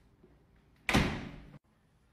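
A hinged interior door slammed shut: one loud bang about a second in, ringing briefly before it cuts off suddenly.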